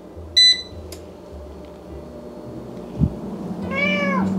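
A Cosori air fryer's control panel beeps once about half a second in as its start button is pressed, followed by a small click. A low steady hum then builds. Just before the end, a cat meows once, the call rising and then falling.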